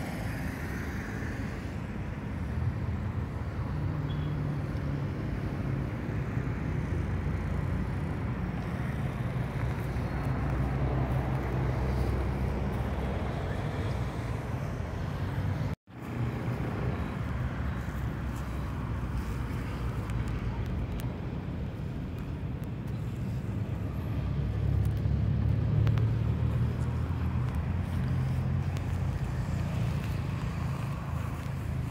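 Road traffic from a nearby street: a steady low rumble that swells as vehicles pass. The sound cuts out for an instant about halfway through.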